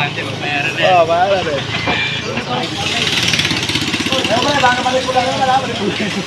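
Several people's voices talking and calling out over steady street noise, with passing traffic beneath.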